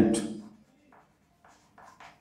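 Chalk writing on a chalkboard: a few short, faint scratchy strokes starting about a second in. A man's voice trails off in the first half second.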